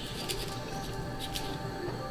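Soft background music with sustained tones, with a few faint, brief scrapes of a small knife peeling a green banana.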